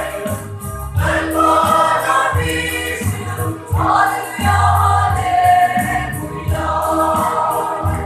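A large mixed choir of men and women singing a gospel hymn together in long held notes, with a big barrel drum beating along underneath.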